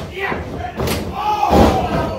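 A wrestler's body slamming onto the mat of a wrestling ring: a sharp smack a little under a second in, then a louder, heavier slam about a second and a half in, with voices shouting around it.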